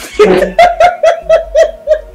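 A woman bursting into loud laughter: an opening outburst, then a quick run of 'ha' bursts at about four a second.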